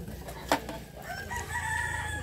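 A single sharp knock about half a second in, then a rooster crowing one long call through the second half.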